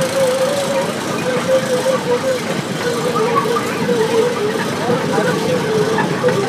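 A motor or engine running steadily, its hum wavering slightly in pitch, with voices in the background.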